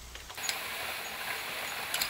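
Old belt-driven circular knitting machines running: a steady mechanical whir with a light tick repeating about three times a second, starting about half a second in.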